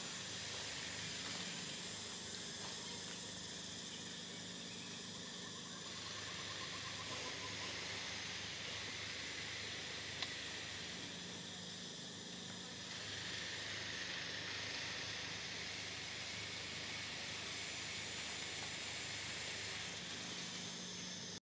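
Steady outdoor background hiss with even high-pitched bands running through it and a faint low hum beneath, broken once by a single click about ten seconds in.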